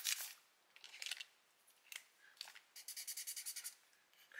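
A felt-tip marker writing on a paper sticky note, a quick run of short strokes, about ten a second, in the second half, after a few soft paper rustles as the note and bill are handled.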